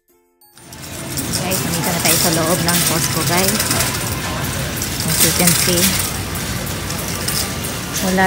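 Metal shopping cart rattling and clinking as it is pushed, with voices of other people talking behind it. A short stretch of music with chime tones cuts off about half a second in.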